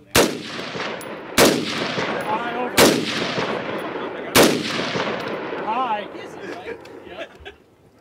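Four aimed rifle shots from a Vietnam-era AR-15 carbine in 5.56 mm, roughly a second and a half apart. Each shot trails off in a long echo.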